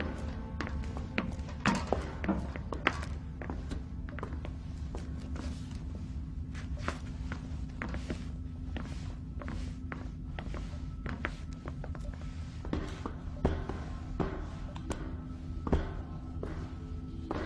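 Film soundtrack music over a steady low drone, with irregular clicks and knocks scattered throughout.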